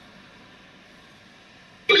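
Faint steady hiss of a quiet car interior, then near the end a man's voice starts abruptly, played back from a phone video.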